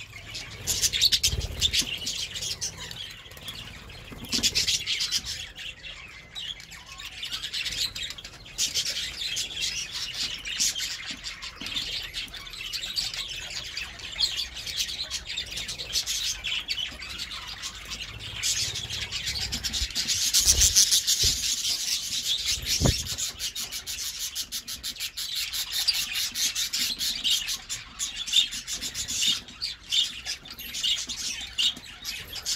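A flock of budgerigars chattering continuously, a dense mix of warbles and chirps, swelling loudest about twenty seconds in. A few dull low thumps break in, one early and two a little after the loudest stretch.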